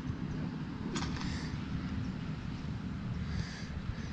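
Low, steady rumble of wind on the microphone, with a short rustle about a second in.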